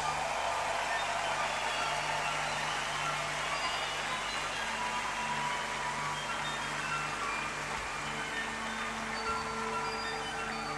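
Live orchestra music, with held low notes and short high flute phrases, under a steady dense wash of arena crowd cheering and applause that starts suddenly and eases off slightly.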